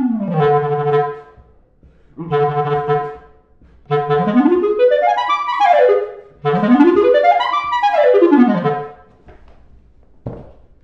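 Solo clarinet playing the end of a concerto cadenza: a falling figure into a held low note, a short second phrase, then two fast runs that sweep up and back down, with brief pauses between the phrases.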